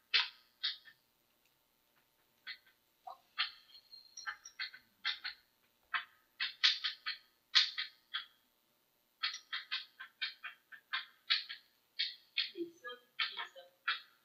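Chalk writing on a blackboard: irregular runs of sharp taps and short scratchy strokes, with a pause of about a second and a half shortly after the start.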